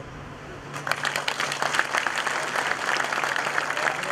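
Audience applause that starts under a second in and keeps up as steady, dense clapping.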